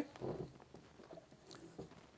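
Faint clicks and light knocks of a blender jar being handled as its lid comes off and the jar is lifted from its base.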